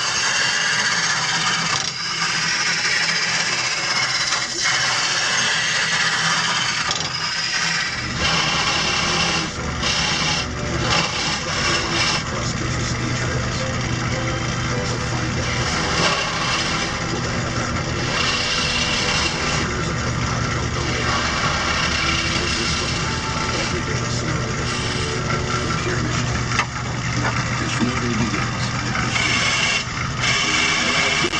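Wood lathe turning a baseball bat blank, a gouge cutting the spinning wood with a steady hiss of shavings over the lathe motor's hum; the low hum grows stronger about eight seconds in.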